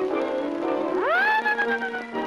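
Cartoon background music with a cartoon cat's meowing wail about a second in: it rises sharply, then is held and falls slowly.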